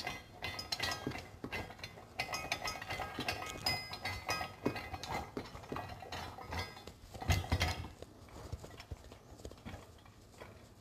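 Steel grapple parts being handled and fitted together on a workbench: repeated metallic clinks and clanks of a black steel arm, rod and bolts, with a heavier knock about seven seconds in.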